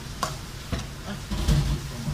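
Metal spatula stirring and scraping chopped beef innards in a frying pan over a faint sizzle, with a few sharp clacks against the pan and a heavier clatter about one and a half seconds in.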